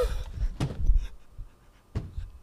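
A man's pained cry trails off into breathless, panting laughter. There are low thumps and sharp knocks, the loudest about a second in and another near the end.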